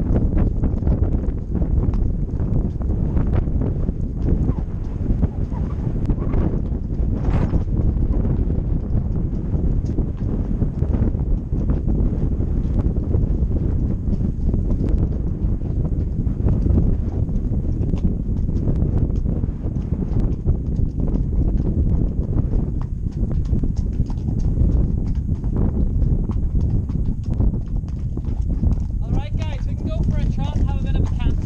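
Horse's hooves clip-clopping on a wet stony track, heard as a string of small knocks over a steady low rumble of wind on the microphone.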